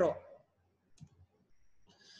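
A single soft click about a second in, typical of a computer mouse button advancing a presentation slide. Otherwise near quiet after a woman's words trail off.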